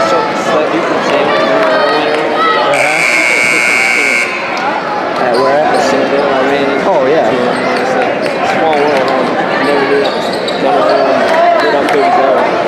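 Gymnasium scoreboard buzzer sounding one steady, high-pitched tone for about a second and a half, a few seconds in, marking the end of a timeout. Crowd talk in the gym runs throughout.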